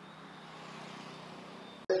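Road traffic noise, a vehicle passing: a soft, even hiss that swells slightly and eases, then is cut off suddenly near the end.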